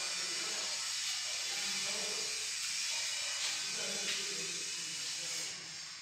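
A steady hiss with faint voices underneath; the hiss drops away about five and a half seconds in.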